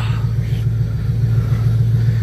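The 1967 Dodge Coronet's engine idling, a loud, steady low throb with an even pulse.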